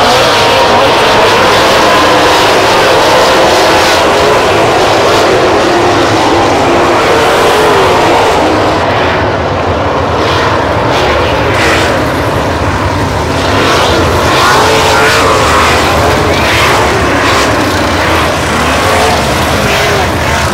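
A pack of winged sprint cars racing at speed, their V8 engines running flat out as one loud, unbroken din whose pitch swells and falls as cars go past and back off for the turns.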